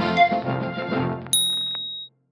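Background music, then about a second and a half in a click and a single high bell ding that rings out: the subscribe-button and notification-bell sound effect of an end-screen animation.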